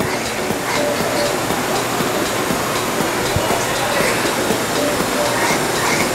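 Steady rushing noise with faint, scattered voices in the background: the ambience of a large indoor space.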